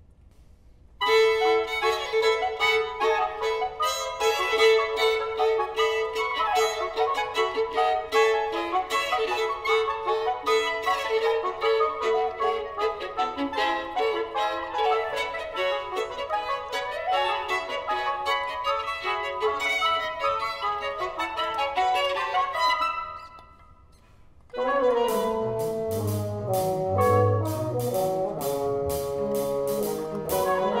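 Live chamber ensemble of violin, double bass, clarinet, trombone and drum kit playing, led by a conductor. The music starts about a second in, with a long held note under quick running lines. It breaks off for about two seconds near the end, then resumes with brass and low notes over a steady percussion beat.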